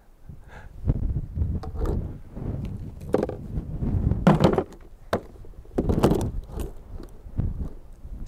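Frozen plastic handheld two-way radios being lifted out of a cooler of dry ice and handled with gloved hands: a string of irregular scrapes, knocks and rattles over a low rumble.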